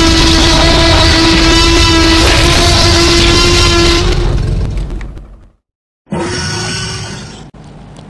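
Loud dubbed-in sound effect: a steady pitched tone over a rushing noise that fades out about five seconds in. After a brief silence, a second, shorter burst of similar sound starts and breaks off, leaving a quieter background.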